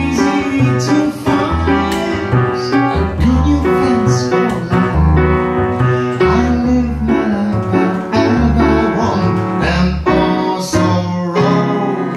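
Fast bossa nova jazz on acoustic piano and pizzicato double bass. Piano chords and runs play over plucked bass notes that change every half second or so.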